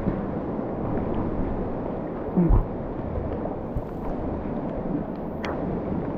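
Fast, swollen floodwater of a muddy river rushing and churning close to the microphone, as a steady noise. A short voice sound breaks in about two and a half seconds in.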